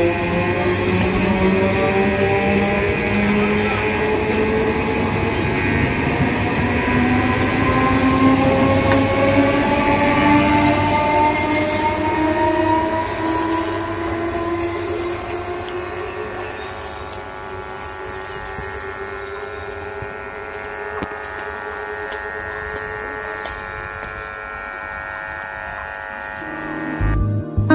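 Electric local train (EMU) pulling away, its traction motors whining with a steadily rising pitch as it gathers speed over the rumble of the wheels. The sound fades over the second half, with some high wheel squeal and clicking.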